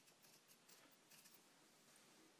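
Near silence: room tone with a few faint small ticks as the push button on a small gyro board is pressed by hand.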